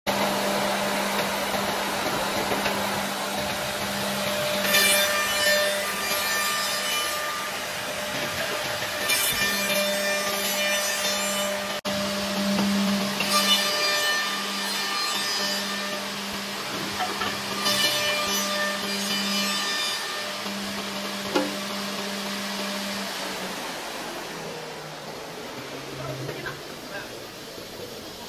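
CNC double-end tenoning machine running with a steady hum while its cutter heads machine round tenons on the ends of curved wooden chair back supports. Four cutting passes come about every four to five seconds, each a burst of high-pitched cutting noise lasting about two seconds. The hum dies away about 23 seconds in.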